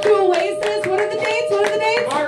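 Small audience clapping, with voices calling out, as a song ends; a single steady tone is held under the applause.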